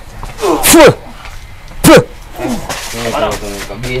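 Two short, very loud shouted cries from men, about half a second and two seconds in, each rising and falling in pitch, followed by low voices near the end.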